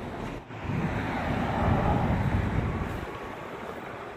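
Street traffic noise: a passing vehicle, its sound swelling about a second in and fading away again.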